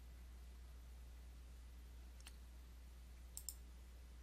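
Near silence over a faint low hum, broken by three faint computer mouse clicks: one about two seconds in and a quick pair about three and a half seconds in.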